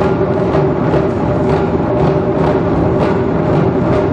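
Japanese taiko drum ensemble playing: dense, continuous drumming with accented strokes about twice a second.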